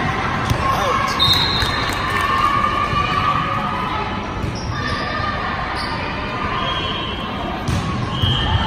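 Indoor volleyball play: a few sharp ball hits in the first couple of seconds and another near the end, over players' and spectators' voices echoing in a large gym.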